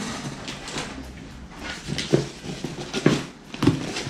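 Cardboard boxes being handled as a shoe box is lifted out of a shipping carton: rustling and scraping with several short knocks, the strongest about two and three seconds in.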